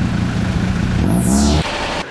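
Vehicle engines running in slow, queued road traffic, with one engine briefly revving up a little past halfway. Over this, a swoosh sound effect sweeps down in pitch, and the engine sound cuts off abruptly near the end.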